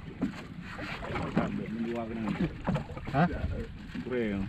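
Mostly voices: men speaking briefly on a small boat at sea, over a steady background of wind and water noise.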